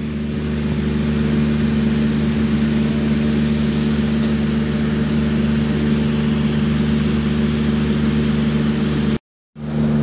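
A steady low mechanical hum with an even hiss over it, unchanging throughout, cutting out to silence for about half a second near the end.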